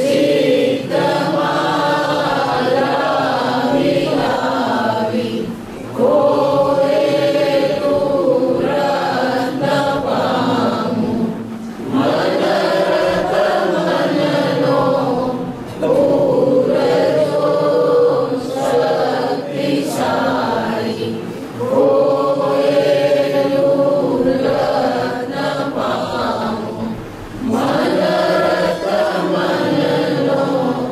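A group of voices chants a devotional prayer in unison, in long sung phrases a few seconds each, with short breaks for breath between them.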